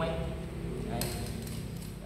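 Plastic PVC drinker-line pipe and fittings being handled and pressed together, with a short click and rattle about a second in.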